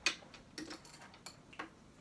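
Light clicks and taps of a makeup brush and eyeshadow palette being handled: one sharp click at the start, then about five fainter ticks over the next second and a half.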